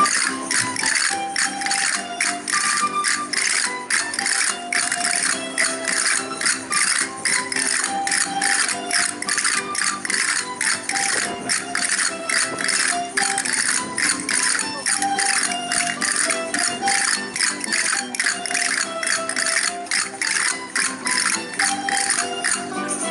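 Aragonese folk dance music: a melody over a fast, even percussive beat of sharp strikes, about three to four a second.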